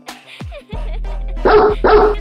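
A dog barking twice, two loud short barks about half a second apart, over background music with a low steady bass note.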